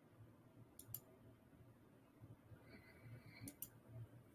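Near silence with a few faint clicks: two quick ones about a second in and two more near the end.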